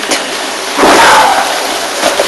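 A person's loud, strained cry, swelling to its loudest about a second in.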